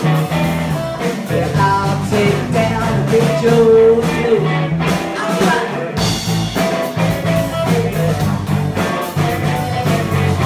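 Live blues rock-and-roll band playing: electric guitar and drum kit, with a woman singing.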